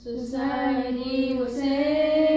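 A trio of boys singing, with long held notes; a new sung phrase begins right at the start after a brief breath.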